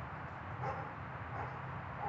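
American bully puppy giving two short, high-pitched yips, under a second apart.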